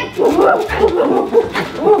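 People in gorilla costumes making ape noises with their voices: a quick string of short hooting and grunting calls that rise and fall in pitch, an imitation of gorillas.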